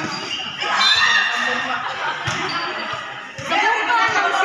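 A volleyball being hit and bouncing on a concrete court, a few sharp knocks, amid players and onlookers shouting and chattering.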